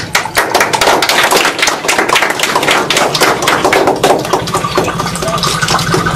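A rapid, irregular run of sharp knocks or claps, several a second, with a faint steady tone joining them in the second half.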